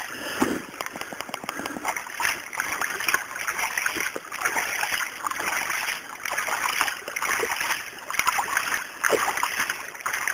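Splashing and wet scraping in irregular bursts as mud and shallow creek water are dug away by hand from a creek bank.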